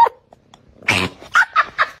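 A domestic cat making a quick run of four short, odd calls, starting about a second in.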